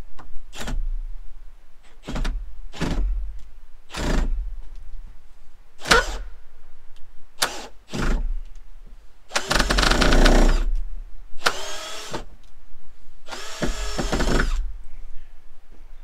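Cordless drill driving screws into cedar fence boards: several short trigger bursts, then three longer runs of about a second each in the second half, the motor's pitch bending during each run.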